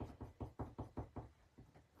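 A colouring pencil worked over a wood-grain die-cut in short, quick individual strokes, each one a light tap or scratch. There are about six a second, and they fade out after a second and a half.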